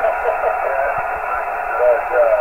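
Amateur radio voice traffic from a transceiver's speaker: a voice on the 2-meter band, thin and cut off in the highs as radio audio is.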